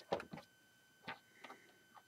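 Handling noise: four or five light clicks and knocks spread over two seconds, the loudest near the start.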